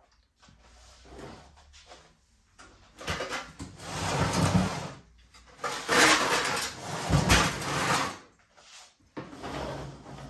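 Handling noise of things being moved about: irregular rustling and scraping, with two louder stretches of about two seconds each, the first a few seconds in and the second past the middle.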